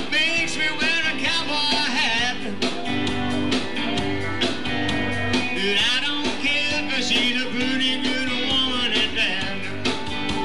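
Live electric blues band playing with electric guitar to the fore over a steady drum beat.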